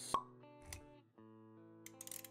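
Intro music with sustained plucked, guitar-like notes, with a sharp pop sound effect a moment in and a softer pop about half a second later.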